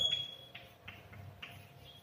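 Chalk writing on a blackboard: a few faint, short taps and scrapes of the chalk strokes spread through the two seconds, over a faint steady hum.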